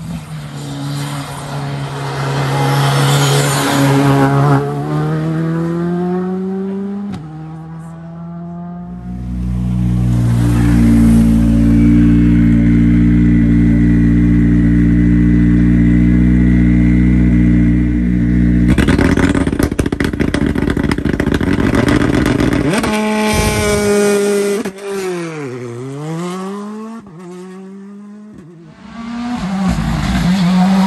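Rally cars accelerating hard, their engines climbing in pitch through the gears. In the middle, a Hyundai i20 rally car sits at the start line with its engine held at steady high revs for about ten seconds, then launches with a burst of rapid cracks as the revs rise. Near the end the pitch drops and rises again, and another rally car comes in loud.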